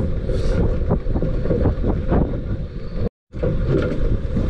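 Wind buffeting the microphone aboard a small boat on choppy water, a steady low rumble broken by scattered short knocks. The sound drops out completely for a moment about three seconds in.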